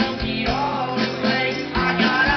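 Live rock band playing through a festival PA, heard from within the crowd: guitar over a drum beat.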